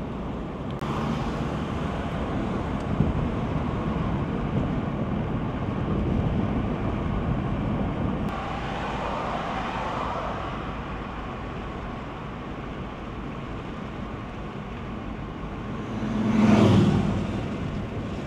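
Steady road and engine noise heard from inside a moving car, with a louder rushing swell that rises and fades near the end.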